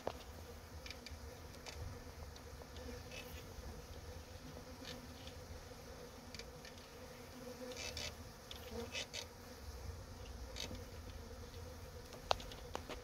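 Newly settled honeybee swarm buzzing: a faint, steady hum of many wings, with scattered short ticks through it.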